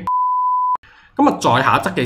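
A single steady pure-tone bleep, about three-quarters of a second long, stopping abruptly: an edited-in test-tone bleep laid over a 'no signal' cut. After a short pause a man starts speaking again.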